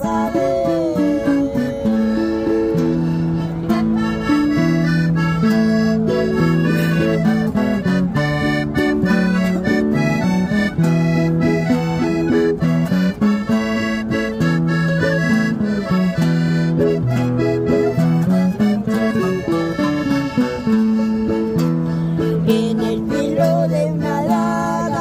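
Instrumental break of a corrido played live on a Hohner diatonic button accordion. The accordion carries the melody in held notes over a steady, evenly strummed rhythm on acoustic guitars.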